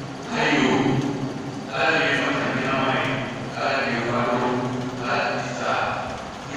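A man's voice speaking into a microphone, carried over a PA in a reverberant hall, in phrases of about a second each.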